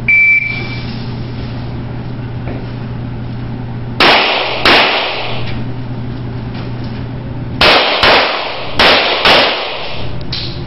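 A shot timer's start beep, then pistol shots: two about four seconds in, and four more in two quick pairs near the end, each echoing in the indoor range. A steady low hum runs underneath.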